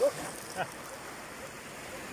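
Steady hiss of surf on a beach, with the end of a man's speech at the very start.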